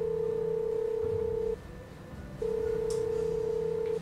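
Telephone ringback tone heard from a mobile phone: a steady beep about a second and a half long, a pause of almost a second, then a second beep. The call is ringing and nobody picks up.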